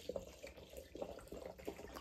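Vodka pouring from a glass bottle into a glass mason jar of powdered mushroom: a faint trickle of liquid filling the jar for a tincture.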